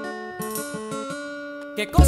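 Salsa music at a quiet break: a plucked string instrument plays a line of single notes with no bass or percussion under it. Near the end the full band with bass and percussion comes back in loudly.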